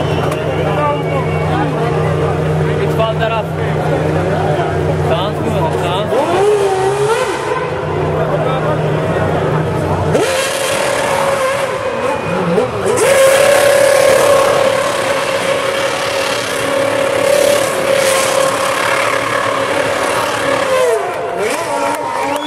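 Formula 1 car doing donuts, its engine held at steady high revs while the rear tyres spin and squeal. About ten seconds in, the engine note steps up to a higher pitch and stays there.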